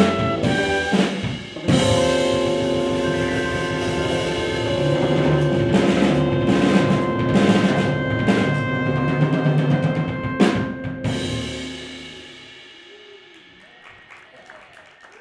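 Live jazz quintet of trumpets, electric piano, guitar, bass and drums ending a tune: the band holds a long final chord over drum and cymbal strikes, with two more hits about ten seconds in, then the chord dies away near the end.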